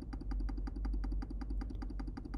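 Rapid, evenly spaced computer clicking, about ten clicks a second, as a video player is stepped forward frame by frame, over a low steady hum.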